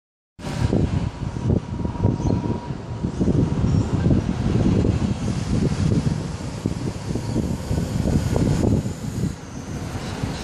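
Wind buffeting the microphone: a loud, uneven, gusty low rumble that rises and falls irregularly.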